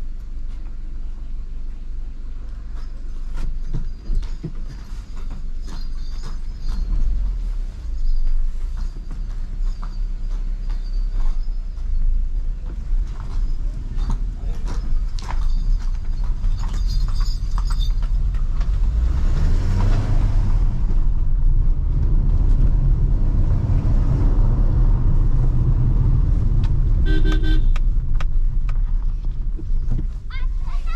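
Maruti Suzuki Ciaz heard from inside the cabin: a steady low engine and road rumble at crawling speed, then the engine revs rising about two-thirds of the way in as the car accelerates, and it runs louder afterwards. Near the end a car horn gives a quick series of short toots.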